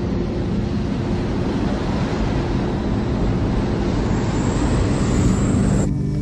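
Fighter jet engine noise: a steady, loud rushing sound with a low drone beneath. About four seconds in a high whine rises in and holds, then the sound cuts off suddenly just before the end.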